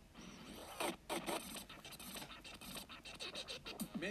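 Scratchy, noisy bursts, loudest about a second in, with gliding pitched sounds near the end as intro music begins.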